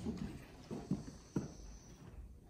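A few light knocks in a quiet room, the sharpest about a second and a half in, over a low hum.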